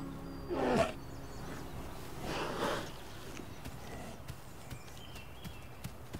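American black bear yawning: a short groan that falls steeply in pitch about half a second in, then a second breathy exhalation a couple of seconds later. Faint small rustles and clicks follow.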